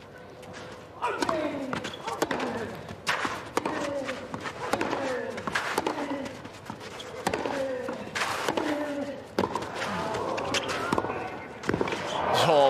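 A tennis rally on a clay court: racket strikes on the ball about once a second, each met by a player's grunt that falls in pitch.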